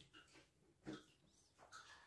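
Faint sounds of a toddler eating with a spoon from a wooden plate: soft scraping of the spoon through the food and small mouth and breathing noises, with one brief sharper sound about a second in.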